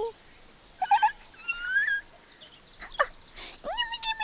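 Squeaky, chirping, wordless creature noises from a puppet character. They come in a few short calls about a second in, just before two seconds and around three seconds in, with pitch that slides up and down.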